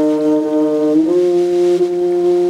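Saxophone and bowed double bass holding long, sustained notes together. About a second in, both move up to new held pitches.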